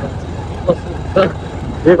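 Motorcycle engine running steadily at low road speed, a low even rumble with some road and wind noise.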